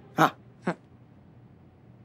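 Two short, sharp sounds about half a second apart, the first much louder than the second.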